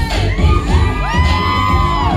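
Dance music with a heavy bass beat of about two pulses a second, playing loud over a club sound system. Audience whoops and cheers rise over it about a second in and hold until near the end.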